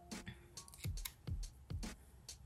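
Scissors snipping a plastic press-on nail tip to shape it, in short sharp cuts, over background music with a steady beat.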